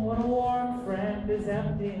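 Live band playing a country-folk song, a male lead voice singing drawn-out held notes with other voices blending in.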